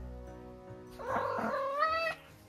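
A Munchkin cat giving one drawn-out meow lasting about a second, starting about halfway in and rising in pitch toward its end, over soft background music.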